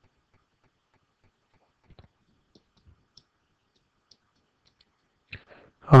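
Faint clicks and taps of a stylus on a writing surface as an equation is written, evenly spaced at about four a second at first, then scattered. A man starts speaking at the very end.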